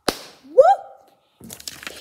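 A sharp click, then a girl's short exclamation rising in pitch about half a second in; faint clicks and rustling near the end.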